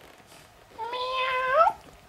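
Domestic cat meowing: one meow about a second long, starting partway in, held level in pitch and rising at the end.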